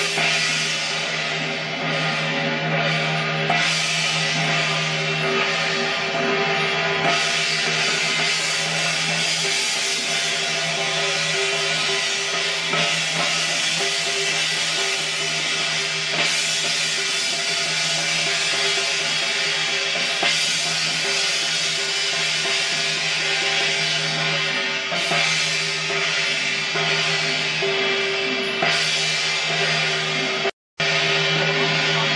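Temple-procession percussion: large hand cymbals clashing with drums, playing continuously over a steady low drone.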